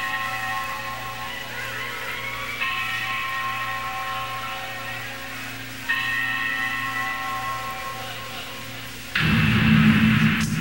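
Electric guitar chords struck and left to ring out, a new chord about every three seconds, in a lo-fi live rehearsal recording of a heavy metal band. About nine seconds in the full band comes in loudly.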